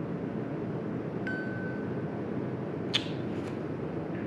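Steady low room noise, with a thin high ping that holds for about a second and a single sharp click about three seconds in.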